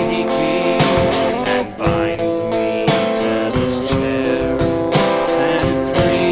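Electric guitar playing chords through an amplifier with a drum kit keeping time, a band playing an original song in 6/8.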